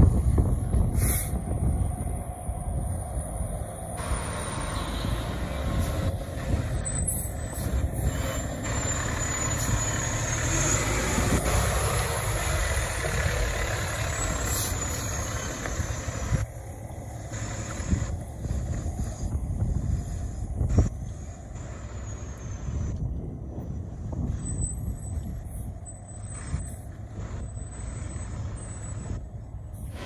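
Fire trucks' engines running as the apparatus moves past, a steady rumble with a few short sharp sounds.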